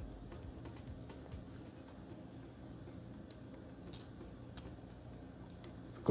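Faint, scattered light clicks of a Bevel safety razor's small metal parts being handled and fitted together, over a low steady room hum.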